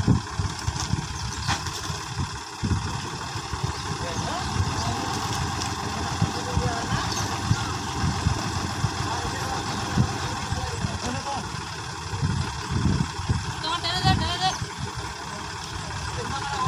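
Diesel engine of a Sonalika tractor running while it sits stuck in mud, with people's voices in the background.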